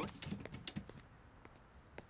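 Cartoon sound effect of light, quick pattering taps, small paws scampering up into a bus, in the first second, then near silence.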